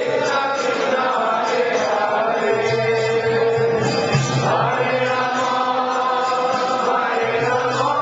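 Devotional group chanting (kirtan): voices singing held, melodic phrases together over a steady low drone, with a new phrase starting about halfway through.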